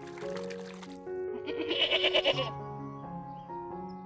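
A goat bleating once, a quavering bleat about a second long that starts about a second and a half in, over steady background music.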